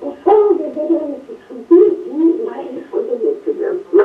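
An elderly Russian village woman's voice from an archival field recording, telling a folk tale in a lilting, sing-song way. It is played back over a loudspeaker into the room, thin and without any bass.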